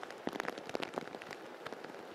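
Heavy typhoon rain pouring onto a street: a steady hiss packed with sharp drop impacts on hard surfaces.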